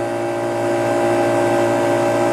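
Steady electrical hum: a low drone with several higher steady tones held over it.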